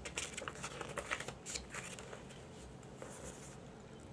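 Glossy paper pages of a CD booklet rustling and crinkling as they are handled and turned, a run of light, quick rustles that is busiest in the first two seconds and then fainter.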